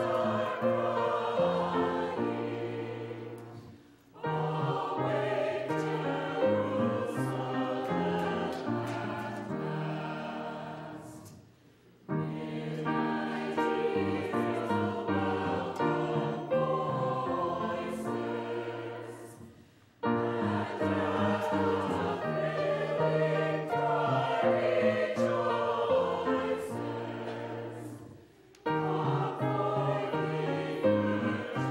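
A mixed church choir singing a slow anthem in long phrases of about eight seconds, accompanied on grand piano. Each phrase fades away almost to nothing before the next begins sharply.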